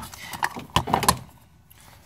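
A few short clicks and knocks in the first second, from the plastic battery box and its wiring-harness clips being handled.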